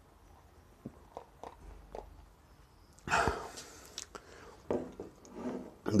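A man drinking lager from a heavy glass beer mug: faint mouth clicks and swallowing, with a louder sip about three seconds in. Near the end, the thick-bottomed glass mug is set back down on the table with a knock.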